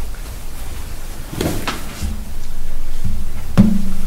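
Knocks and bumps from handling, the loudest a sharp click about three and a half seconds in, over a low steady hum.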